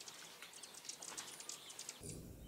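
Faint birds chirping, a few short high chirps scattered over a quiet background hiss.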